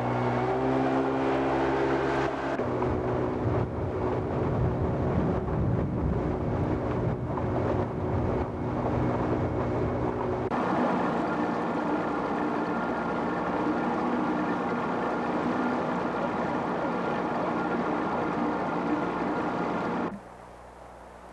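Outboard motor of an open aluminium skiff running steadily at speed, a steady drone with wind and water rush over it. The engine note and the rush change abruptly about two and a half seconds in and again about ten seconds in.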